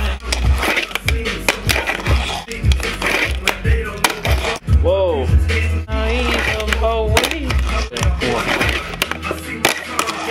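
A fingerboard clacking and rolling on a wooden ramp, with many sharp clicks as the board is popped and landed. Loud music with deep bass and a singing voice plays over it.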